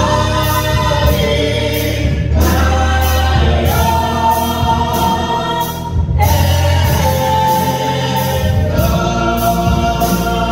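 Gospel vocal group of men and women singing in harmony through microphones. Long held chords shift every couple of seconds over a steady low bass.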